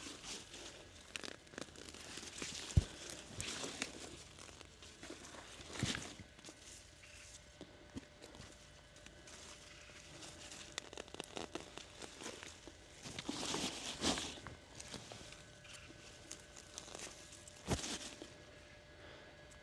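Faint, scattered rustling and tearing of potato foliage as late-blight-infected potato plants are pulled up by hand, with footsteps on soil between the rows; a few louder rustles come around the middle and near the end.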